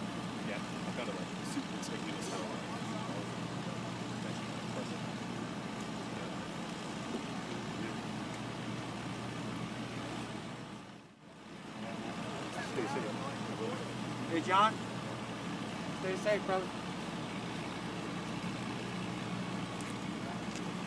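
Steady engine hum of idling vehicles, with brief outbursts of distant voices from the waiting crowd a little past halfway. The sound cuts out for about a second near the middle.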